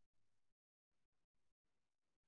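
Near silence: a pause between a teacher's spoken sentences, with only a very faint noise floor.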